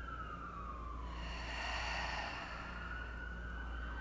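An emergency vehicle siren wailing, its pitch sliding slowly down and then back up.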